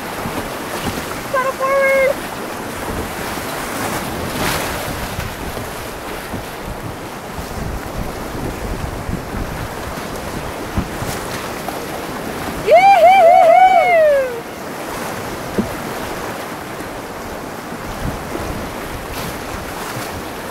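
Whitewater of a river rapid rushing steadily around a canoe, with wind on the microphone. A paddler gives a short shout about a second and a half in, and a loud wavering yell about two-thirds of the way through.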